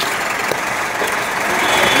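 A vehicle engine running steadily, heard as a continuous even noise.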